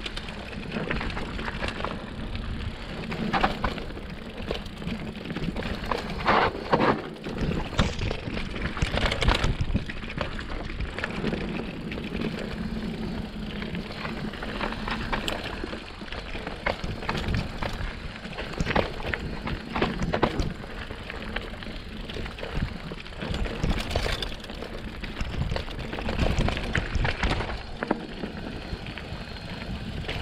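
Mountain bike riding fast down a dirt singletrack: a steady rushing noise of tyres on dirt, broken by frequent knocks and rattles as the bike goes over roots and rocks.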